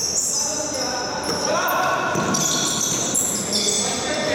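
Basketball game sounds: a ball bouncing on a wooden court floor, sneakers squeaking and players' voices calling, echoing in a large sports hall.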